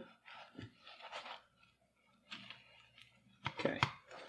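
Faint, scattered soft scraping and handling sounds as an omelette is folded over in a nonstick frying pan.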